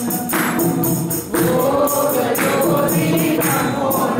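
Group of voices singing a Hindu devotional bhajan together, with jingling hand percussion keeping a steady beat.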